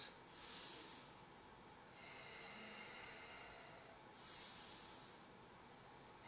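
A man breathing while holding a one-legged standing balance pose: two soft breaths, one just after the start and another about four seconds in, over quiet room tone.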